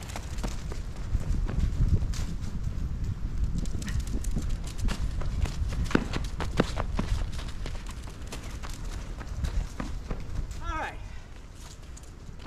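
Running footsteps of a person and a dog on an asphalt driveway: quick irregular scuffs and taps over a steady low rumble. A short spoken "All right" comes near the end.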